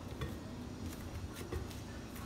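Plastic cling film being pressed and smoothed by hand over a plate, giving a few faint, brief crinkles and ticks over a low background hum.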